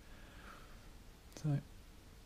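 Mostly quiet room with a faint soft brushing of a paintbrush working oil paint on the canvas. About one and a half seconds in, a man makes a brief murmured vocal sound.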